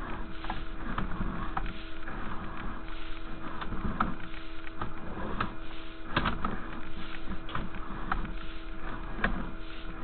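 Sewer inspection camera's push cable being pulled back out of the line, with irregular scrapes and knocks over a steady electrical hum from the scope equipment.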